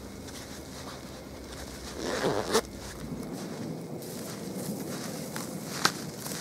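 A winter jacket's zipper pulled shut in one short stroke about two seconds in. Later, faint crunching footsteps in snow, with a sharper crunch near the end.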